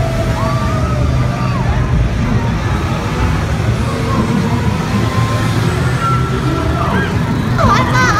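Crowd noise: many people talking in a busy street over a loud, steady low rumble.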